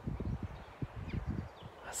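Irregular soft low thuds and rumble on a phone microphone in an open field, the kind of buffeting that wind or handling makes, several knocks a second.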